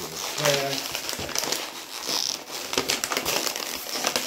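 Packaging crinkling and crackling in irregular bursts as hands struggle to get an item open.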